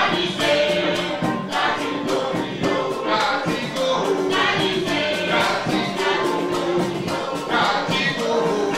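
Live Afrobeat band playing, with a chorus of female backing singers singing over a steady percussion beat.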